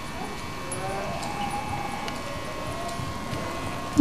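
Steady background noise with a faint hum and faint, indistinct distant voices.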